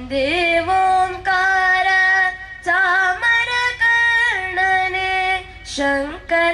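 A young girl singing solo into a handheld microphone: long held notes that slide into pitch, in phrases broken by short pauses for breath.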